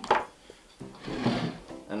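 An electric plug pulled out of a mains socket, with a short click and scrape near the start.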